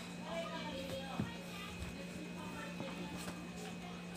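Faint distant voices over a steady low electrical hum, with a short thump a little over a second in and a smaller one near two seconds.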